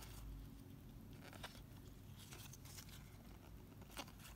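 Faint sliding and flicking of baseball trading cards being shuffled by hand through a pack-sized stack, with a few soft ticks as cards pass each other.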